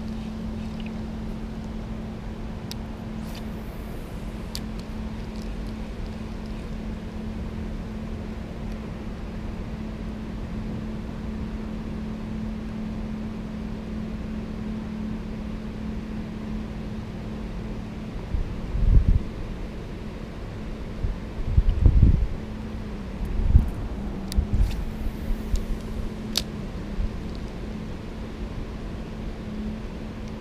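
Steady outdoor background noise with a constant low hum, broken by a few low thumps about two-thirds of the way through and a few faint light clicks.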